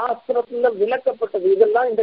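A man's voice speaking continuously.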